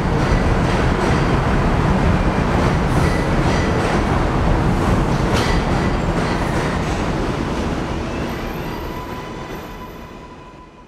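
Bombardier R62A subway train running away along an elevated steel structure: a steady rumble with a few sharp clicks, fading away over the last few seconds, with a faint high whine near the end.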